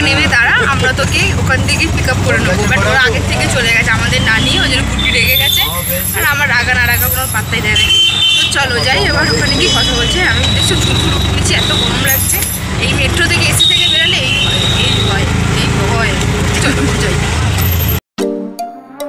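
Auto-rickshaw engine running with a steady low drone, heard from inside the passenger cabin under people talking.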